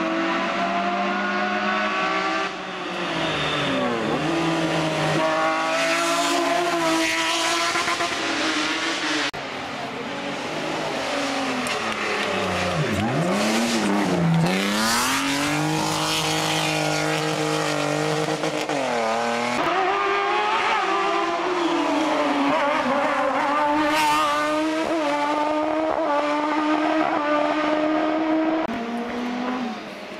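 Hill-climb race car engines revving hard through tight corners, the pitch climbing and dropping with each gear change and throttle lift, with tyre squeal as the cars slide. The sound jumps abruptly between cars several times.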